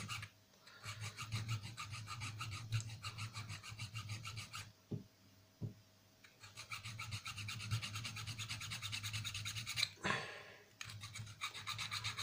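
Small hand file rasping along the edge of a thin pure (.999) tin pendant in rapid short strokes, taking off the sharp cut edges. The filing pauses for about a second and a half near the middle, broken by two light clicks, then resumes.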